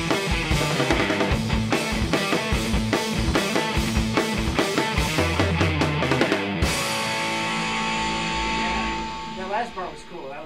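Electric guitar and a Yamaha drum kit playing a rock riff together, the drums hitting in a steady beat. About two-thirds of the way through they stop on a final chord that rings on and fades, and a man starts talking near the end.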